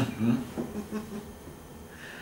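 A man laughing briefly under his breath, a few short chuckles in the first second that fade away.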